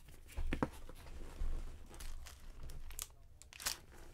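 Wrapper or sleeve packaging crinkling and tearing as it is handled by hand, in a few short spells, the loudest about half a second and a second and a half in.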